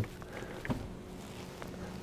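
Electric roof sunshade of a Lexus LM retracting, its motor giving a faint steady hum, with a small click about two thirds of a second in.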